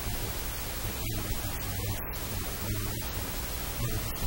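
Steady static hiss filling the recording across all pitches, with a low hum underneath.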